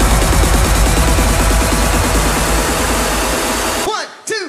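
Loud, dense electronic dance music at 140 BPM with a steady driving rhythm, cutting out suddenly near the end.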